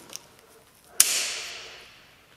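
A plastic tent-pole locking clip snaps onto the crossing of two aluminium poles with one sharp click about a second in, followed by a brief rustle of nylon flysheet that fades out. A couple of light clicks of the clip being handled come just before.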